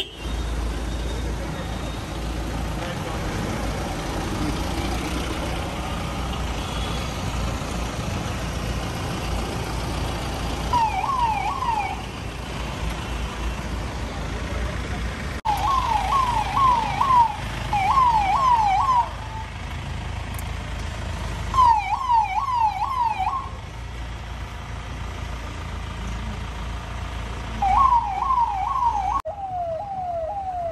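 Police vehicle siren sounding in short bursts of quick rising sweeps, about four a second, five bursts in all, over steady traffic and engine noise from the slow-moving convoy.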